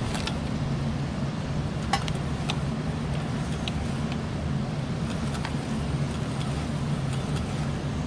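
A few light metallic clicks as a large wheel-type tube cutter is fitted and tightened around 6-inch copper rigid transmission line, over a steady low mechanical hum.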